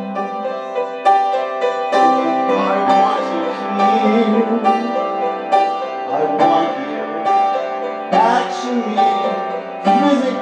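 Upright piano playing sustained chords, struck about once a second, in a slow original song, with a voice singing long wordless notes over it.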